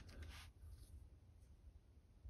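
Near silence: room tone, with faint rustling from gloved hands handling steel knife blanks in the first half second.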